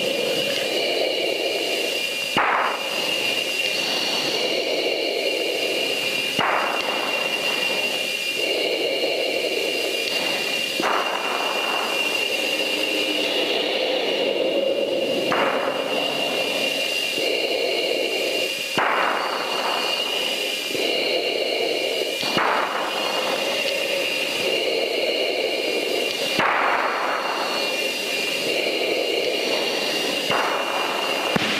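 F-15C Eagle's twin jet engines heard from inside the cockpit: a steady high whine over a rushing noise. Short rushes come about every four seconds.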